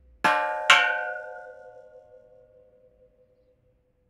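Two bell-like metallic clangs struck about half a second apart near the start. They ring out and fade over about three seconds above a faint, steady held tone, within an experimental ambient noise piece.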